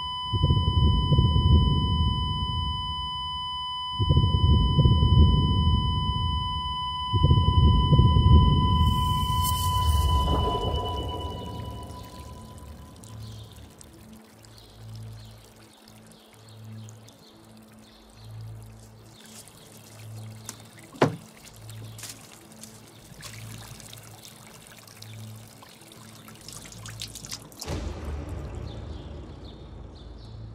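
A patient monitor's continuous flatline tone, the alarm for no heartbeat, over three loud, deep swells of dramatic music. The tone fades out about ten seconds in, leaving quieter music with soft low pulses and one sharp click about 21 seconds in.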